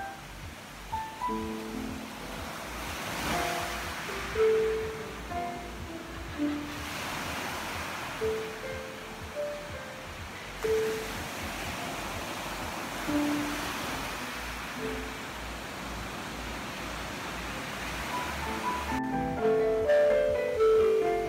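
Slow, sparse piano improvisation, single notes spaced about a second apart, over the wash of ocean surf that swells and fades a few times. The notes grow denser near the end.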